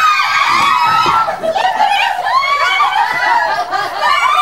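Several women laughing and talking over one another at once, with high, overlapping voices throughout.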